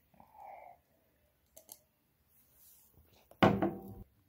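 A man drinking soda from a glass: a soft swallow early on, a couple of light clicks, then a short loud vocal sound from the drinker after the sip near the end.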